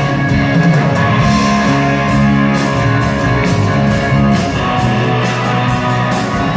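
Live rock band playing an instrumental passage: electric guitar over a steady drum beat, loud and even throughout.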